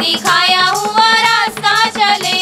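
Women singing a Hindi Christian worship song, a lead voice with long held, wavering notes, over instrumental backing with a steady low beat.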